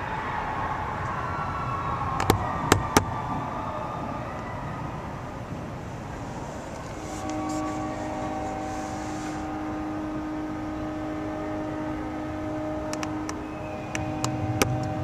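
Ice rink after a goal: noisy cheering-like haze with a few sharp knocks, then from about seven seconds in a steady horn tone that sounds and holds.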